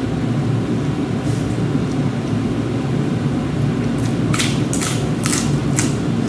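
A person chewing a mouthful of food, with a quick run of about five crisp smacking or crunching clicks in the last two seconds, over a steady low hum.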